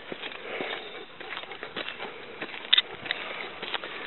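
Two harnessed sled dogs sniffing and shuffling about on pavement while being handled on their lines, with small clicks and rustles throughout and one sharper click nearly three seconds in.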